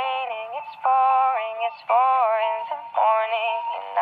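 Singing in a high, synthetic-sounding voice, thin and without bass, carrying a melody in four short held phrases.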